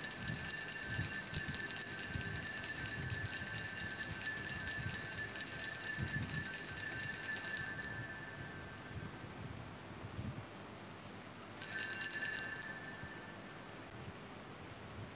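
Altar bells, a cluster of small high-pitched bells, shaken in a rapid continuous jingle for about eight seconds to mark the elevation of the consecrated host. A second brief ring comes near the end.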